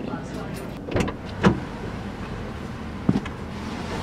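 A person getting into a car through its open driver's door: a few short knocks and rustles from the door and seat over a low steady hum.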